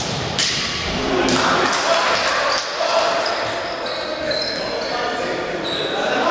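A futsal ball kicked hard with a sharp thud, then players and spectators shouting over one another, echoing in a gym hall.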